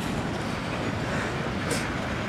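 Steady outdoor background noise, an even rushing sound with no clear single source, with a brief high hiss near the end.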